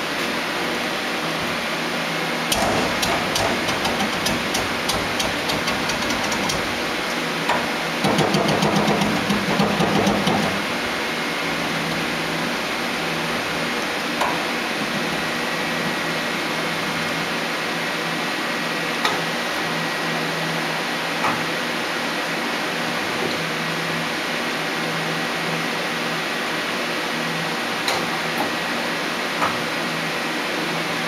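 Okuma Howa 2SP-V5 CNC vertical turning center running with a steady hum. Two stretches of rapid mechanical clicking and clatter come from about two and a half to seven seconds in and from about eight to ten seconds in, and a few single clicks follow later.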